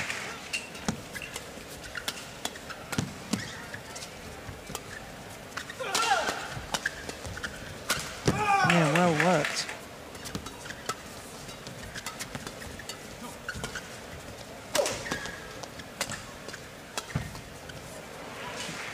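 Sharp irregular clicks of rackets striking a shuttlecock during a badminton rally, with two short wavering vocal 'oh' cries, about six and nine seconds in.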